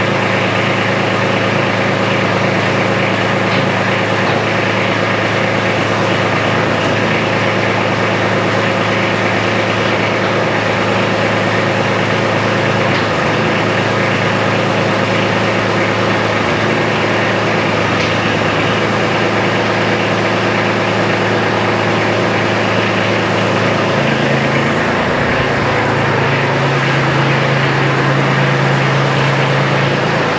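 Kubota B2601 compact tractor's three-cylinder diesel running steadily while it drives the hydraulics that angle the plow blade. Its note changes about four-fifths of the way through.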